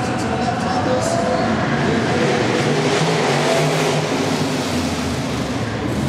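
Racing car engines revving up and down as cars lap a track inside a large indoor hall.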